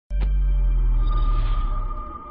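Synthesized opening sting of a TV news programme: a sudden deep bass hit with several held, ringing tones, a higher steady tone joining about a second in, beginning to fade near the end.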